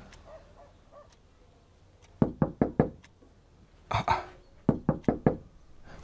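Knocking on a door: two bursts of about four quick knocks, the first about two seconds in and the second near the end, with a brief noise between them.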